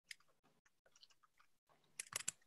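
Near silence: faint room tone over a video-call line, with a few soft, scattered clicks, the clearest about a tenth of a second in.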